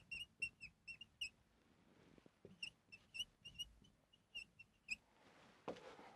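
Faint marker pen squeaking on a whiteboard as words are written: a string of short, high chirps in two runs, with a pause of about a second between them.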